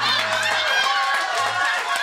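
Several people's voices talking and exclaiming over one another.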